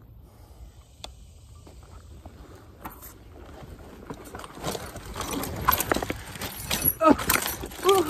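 Electric mountain bike rattling and clattering over a rough dirt trail, the knocks growing louder and denser from about halfway through. A short vocal exclamation comes near the end.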